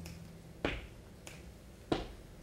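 Sharp finger snaps, two clear ones about a second and a quarter apart with a fainter one between, in a quiet gap as a low double bass note dies away.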